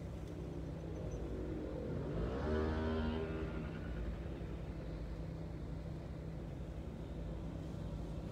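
Steady low engine hum of traffic idling at a red light. About two seconds in a vehicle passes close by, its engine note rising as it accelerates; this is the loudest moment.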